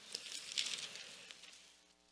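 Paper rustling as Bible pages are turned: a dry rustle with a few small clicks that starts suddenly and fades out over about a second and a half.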